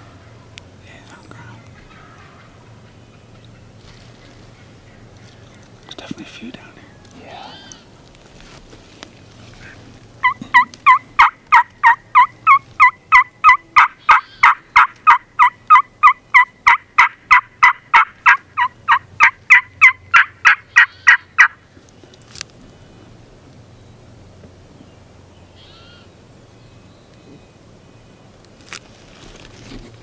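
A long, even run of loud turkey call notes, about three a second, starting about ten seconds in and lasting about eleven seconds.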